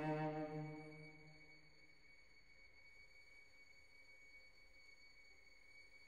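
An orchestral chord dies away over the first two seconds. After that there is near silence in a pause of the piece.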